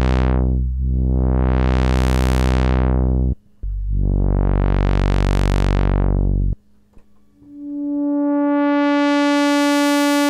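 A Moog Minimoog's low-pass ladder filter being swept by hand on sustained notes. Two low notes each go from dark to bright and back to dark as the cutoff is opened and closed. After a brief gap, a higher note fades in and slowly grows brighter as the cutoff is raised again.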